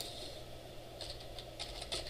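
Faint computer keyboard typing: a few quick key clicks starting about a second in, as a word in the code is typed over. A steady low room hum underneath.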